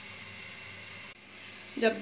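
Steady hiss of a lit gas stove burner under an empty kadhai. It cuts off suddenly about a second in.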